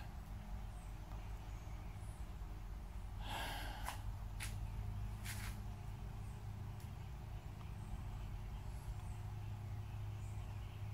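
A steady low hum, with one short, breathy nasal exhale about three seconds in, followed by a few faint clicks.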